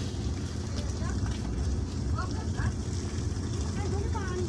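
Car driving slowly, heard from inside the cabin: a steady low rumble of engine and tyres on the snowy road.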